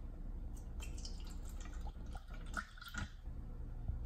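Water poured from a plastic bottle into clear plastic cups, splashing and trickling unevenly for about two seconds, with small plastic clicks.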